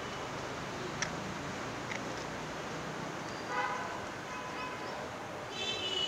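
Steady outdoor city background noise, with distant traffic. A brief pitched tone, like a faraway horn, sounds about three and a half seconds in.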